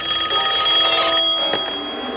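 Push-button desk telephone ringing: one trilling ring that stops about a second in and dies away.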